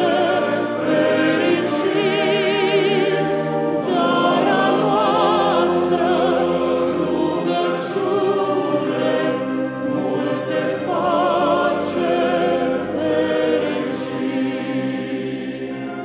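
A Christmas song sung with choir and orchestra: long held vocal notes with wide vibrato over sustained accompaniment. The orchestra is a military wind band with added violins.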